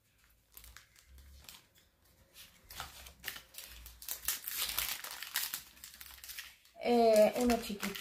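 Packaging crinkling and rustling as the contents of a parcel are unwrapped by hand, in a run of crackles that is busiest around the middle. Near the end a woman's voice speaks up.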